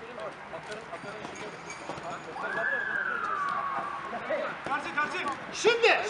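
Players shouting on a football pitch over a steady background hubbub. About halfway through one long high call falls in pitch over about two seconds, and near the end several loud shouts overlap as play moves toward goal.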